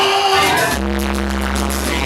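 Loud party dance music. The shaker-type percussion drops out and a low held bass note, with a few sustained higher tones, comes in just under a second in.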